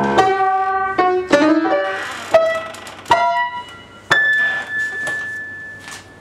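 Solo piano playing a sparse, slow phrase of about six separate high notes, each struck and left to ring. The last high note, a little past the middle, is held and fades away as the improvisation closes.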